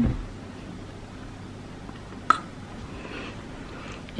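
Quiet room with a steady low hum, broken by one short, sharp click a little over two seconds in.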